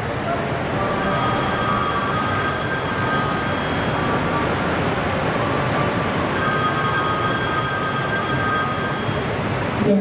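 Mobile phone ringing: two stretches of ringing a few seconds each, about 1 s and 6.5 s in, a steady electronic ringtone over a constant background hiss.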